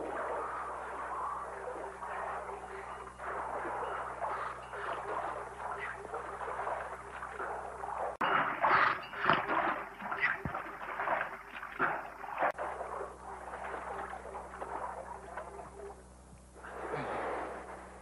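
Water splashing as a swimmer surfaces and swims to a dock, with a burst of loud, irregular splashes from about eight to twelve seconds in, over a steady rushing background.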